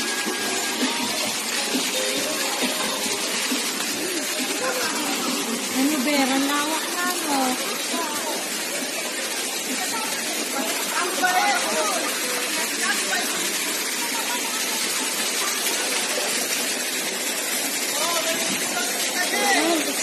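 Steady rush of water pouring over rocks into a pool, with people's voices talking in the background now and then.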